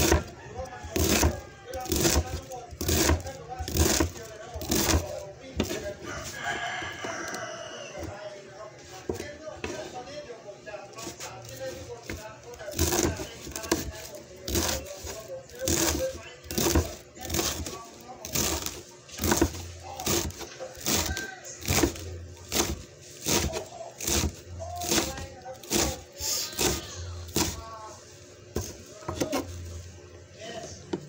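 Knife chopping vegetables on a cutting board, sharp regular strokes about twice a second. A rooster crows once about six seconds in.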